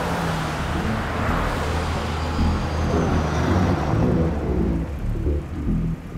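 Low droning music under the noise of a motor vehicle, which swells in the first second or two and then fades away.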